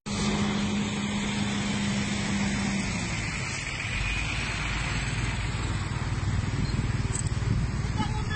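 Road traffic: a motor vehicle running on the road, with a steady hum for the first few seconds and a deeper rumble building from about halfway through as a vehicle draws near.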